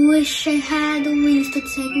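A girl singing a run of held notes, each with a slight waver and separated by short breaks, over a soft backing track.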